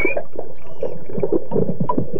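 Underwater sound of gurgling water and bubbles, with a few short high-pitched squeaks typical of Florida manatee chirps.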